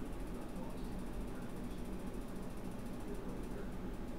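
Computer mouse scroll wheel ticking as a web page is scrolled, over a steady low hum of room noise.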